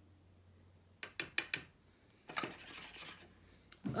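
Thin metal tool scraping and tapping loose face powder level in a small plastic pressing pan: a few sharp ticks about a second in, then a longer rasping scrape past the middle and one more tick near the end. Faint.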